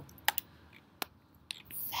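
A few sharp computer mouse clicks spaced out over a quiet room: two close together near the start, then single clicks about a second in and a second and a half in.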